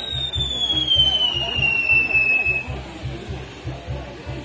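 Whistling firework on a castillo's spinning star wheel: one long whistle that slowly falls in pitch and dies out about two-thirds of the way through. Music with a steady low beat plays underneath.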